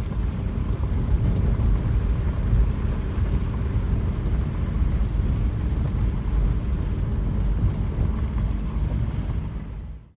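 Steady low rumble of a car driving along a gravel dirt road, tyres and wind noise, with a faint crackle of gravel. It cuts off suddenly at the end.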